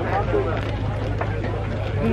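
A steady low engine hum, with voices chattering in the background.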